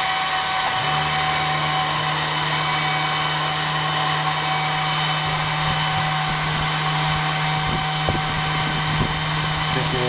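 24-volt DC cooling fans in a shed's exhaust system, an attic fan and an inline duct fan, running with a steady whir and hum. A deeper hum joins about a second in.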